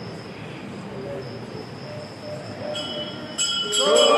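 Low murmur of devotees in a temple hall. Near the end, metal temple bells break into loud, rapid ringing as the aarti begins, joined at the very end by a held tone that rises in pitch as it starts.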